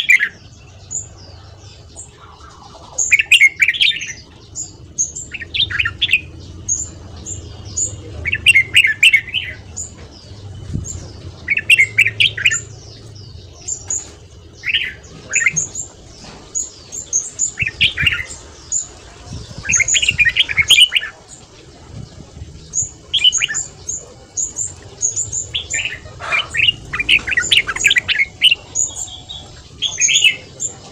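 Red-whiskered bulbul singing: short, bright, warbled phrases repeated every one to three seconds, with thin high chirps in between.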